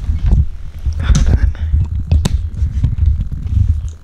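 Handling noise as the camera is moved about: a continuous low rumble with thumps and rubbing on the microphone, plus a few sharp clicks and crinkles from fingers handling a small printed photo.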